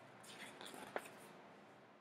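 Near silence: faint soft rustling, with one small click about a second in.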